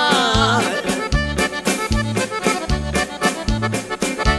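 Cumbia band playing an instrumental passage: accordion carrying the melody over a steady beat of bass guitar and percussion.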